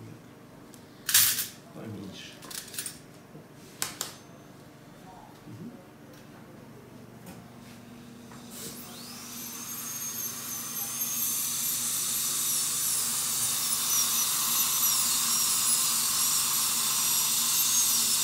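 A few sharp clicks of instruments being handled, then a dental handpiece with a bur spins up about nine seconds in and runs with a steady high whine over a hiss, its pitch dipping now and then as the bur cuts. It is drilling through the filling over an implant's screw channel.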